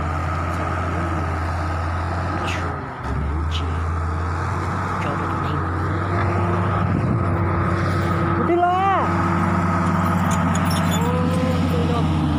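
Diesel engines of a bulldozer and an excavator running steadily, with a brief dip about three seconds in. Short voice-like calls come over them near the end.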